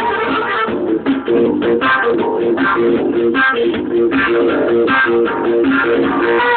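Live instrumental music: guitar and bass playing a fast, repeating riff of short plucked notes.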